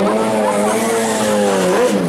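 A racing engine held at steady high revs, its pitch wavering slightly, then falling away near the end.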